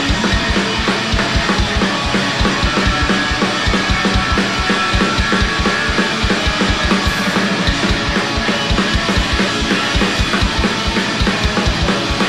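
Skate-punk band playing live: electric guitar, bass guitar and drum kit, with a fast, steady kick-drum beat and no singing.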